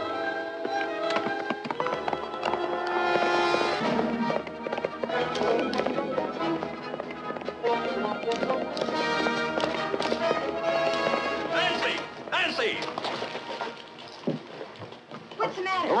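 Orchestral film-score action music, with the knocking of a horse's hooves under it.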